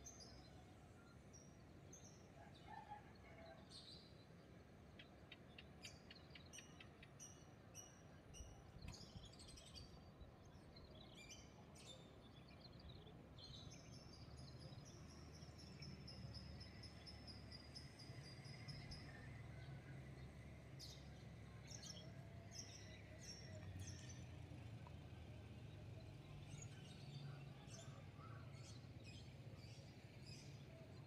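Near silence: faint outdoor background with birds chirping now and then, short high chirps over a low steady hum.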